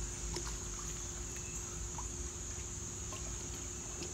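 A steady, high-pitched insect chorus droning without a break, over faint small splashes of water and a faint steady low hum.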